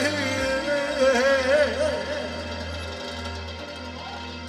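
Live band music: a voice sings an ornamented line with wide vibrato over electronic keyboard accompaniment with saxophone. The lead line fades about halfway through, leaving the keyboard's steady bass and backing.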